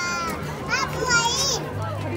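A young child's high-pitched voice calling out in short cries that rise and fall in pitch, about halfway through.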